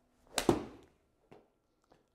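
Golf club swinging through and striking a golf ball: a brief swish leading into one sharp, loud crack about half a second in, with a short decay. A faint single knock follows about a second later.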